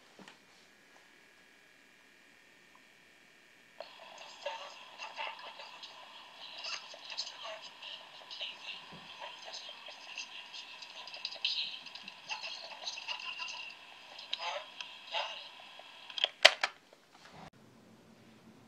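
Talkboy cassette recorder playing back recorded dialogue sped up, the voices thin and tinny through its small speaker. It opens with about four seconds of faint tape hiss before the voices start, and two sharp clicks come near the end.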